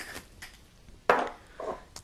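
Soft kitchen handling sounds of a small glass spice jar being worked over a stainless saucepan as Szechuan pepper is added, with one brief louder noise about a second in.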